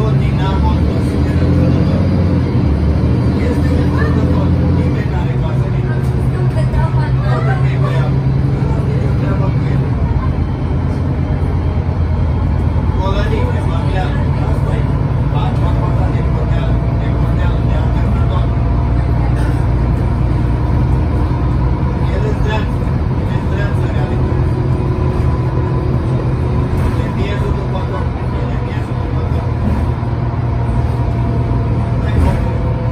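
Inside an Otokar Kent C18 articulated city bus under way: steady engine drone and road noise. The engine note changes about five seconds in and again about ten seconds in.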